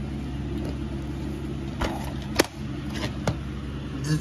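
Clicks and taps of a plastic DVD case being picked up and handled, four or so, the loudest about two and a half seconds in, over a steady low hum.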